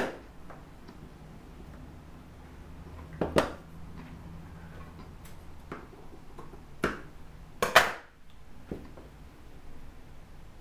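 Sharp clacks of fabric-cutting tools, a rotary cutter and scissors, being handled and set down against a glass cutting board and metal ruler: one at the start, a pair about three seconds in, and the loudest few around seven to eight seconds, over a faint low hum.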